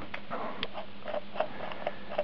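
Plastic threaded cap of a pressure washer's fine inlet water filter being twisted by hand: a run of small, irregular plastic clicks and ticks, several a second.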